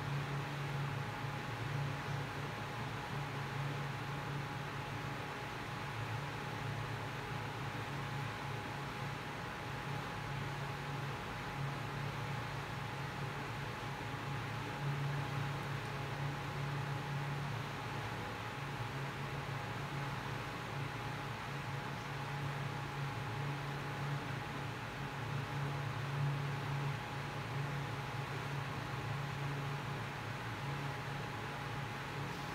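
Steady background hiss with a low hum that swells and fades a little every few seconds, and a faint thin steady tone above it.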